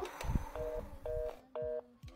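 Telephone busy signal: three short beeps of two steady tones together, about half a second apart, after a low thump near the start.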